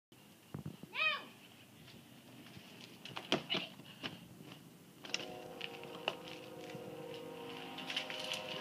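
Small children's bikes clicking and rattling on concrete, with a short rising-and-falling squeal about a second in. From about five seconds a steady hum sets in.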